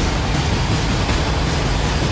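Rushing, rumbling whoosh sound effect of an animated channel intro, a loud steady wall of noise with a deep rumble underneath.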